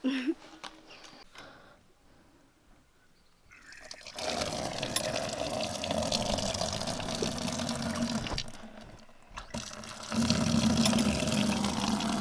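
Water from an outdoor tap running into a plastic bucket as it fills. The flow starts about four seconds in, drops away briefly near nine seconds and runs again from about ten seconds.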